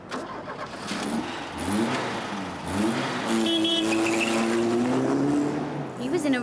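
Car engine pulling away and accelerating, its note rising twice as it goes up through the gears, then running steadily as it drives off.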